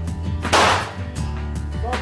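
A single semi-automatic pistol shot, sharp and loud, about half a second in, over background music.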